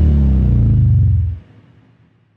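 Cinematic logo-reveal sound effect: a loud, deep rumbling sting that holds, then dies away about one and a half seconds in, leaving a faint fading tail.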